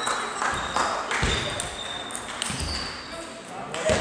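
Celluloid-type table tennis ball clicking sharply against the table and bats in a rally or serve, with a few low thuds and background voices in the hall.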